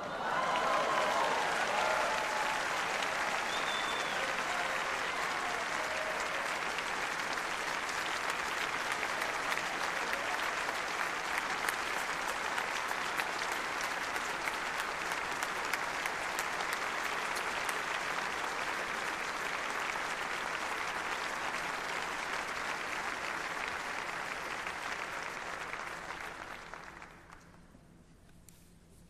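A large audience applauding, steady and sustained, dying away near the end.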